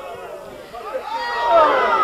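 A man's voice: faint talk at first, then from about a second in a louder, drawn-out call with slow rises and falls in pitch, running straight on into speech.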